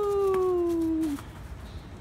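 A single drawn-out vocal cry that slides steadily down in pitch for about a second and then stops, leaving only faint background.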